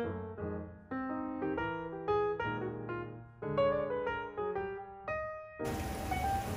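Background piano music: single notes and chords at a moderate pace, each note fading after it is struck. Near the end a steady hiss comes in under the music.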